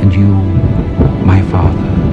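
A deep rumble with shouting voices cuts in suddenly over music.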